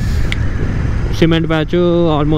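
Motorcycle engine and wind rumble while riding on a rough road. After about a second a voice comes in over it and carries on to the end.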